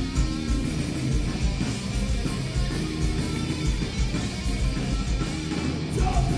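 Live rock band playing, with electric guitar to the fore over bass and drums and a steady driving beat.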